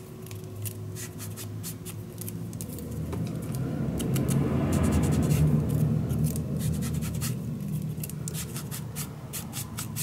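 Paper strips and craft supplies handled on a desk: scattered light clicks and rustles. A low rumble swells over the middle few seconds and then fades.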